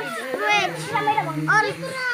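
Children's voices talking and calling out, several at once.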